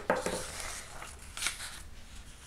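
Thin kami paper rustling and sliding as a square sheet is folded in half and the fold smoothed flat by hand, with a sharp rustle just after the start and a louder one about a second and a half in.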